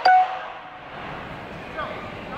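A single metallic percussion strike that rings briefly right at the start, then the murmur of a large hall with faint voices.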